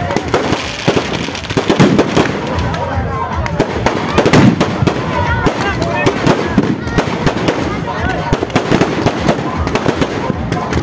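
Firecrackers going off inside burning effigies: a rapid, irregular run of sharp crackles and bangs, with a few louder bangs standing out, over the voices of onlookers.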